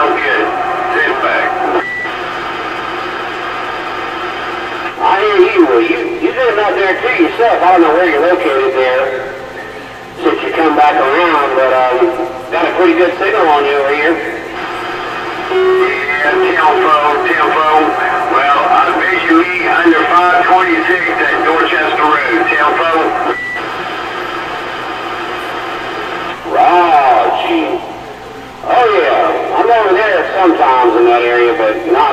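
Voices of other CB operators coming in over a Kraco CB radio's speaker. They sound thin and narrow, over a steady hum and static, and there are short pauses between transmissions. A brief high beep is heard twice.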